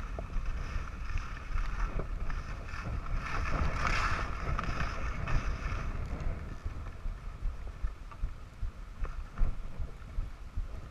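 Wind rushing over the microphone of a camera carried by a skier moving downhill, with the hiss of skis sliding over snow. The hiss swells about four seconds in and eases in the second half, with a few light knocks.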